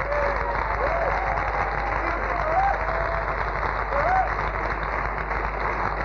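Concert audience applauding and cheering after a rock song ends, with a few shouts and whoops above the steady clapping, heard dull and muffled as on an old radio broadcast recording.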